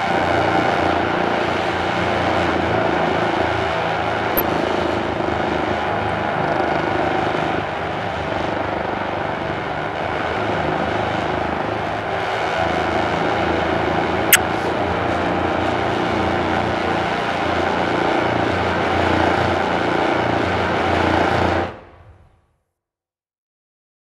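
A drum corps brass ensemble with mellophones holding sustained long tones together in an intervallic warm-up. The chord changes pitch a couple of times, then fades out quickly just before the end.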